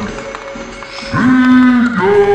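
Distorted cartoon soundtrack: a quieter moment, then about a second in a single held, pitched, voice-like sound that slides up at its start and drops away at its end.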